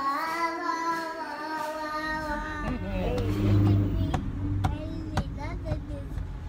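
A toddler singing a long, drawn-out note for the first two and a half seconds or so. Then the low, steady rumble of a car cabin takes over, with a few sharp clicks.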